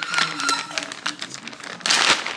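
Clear plastic zip-top bag crinkling and rustling as a hand works inside it around a can of dog food, with a louder burst of crinkling near the end.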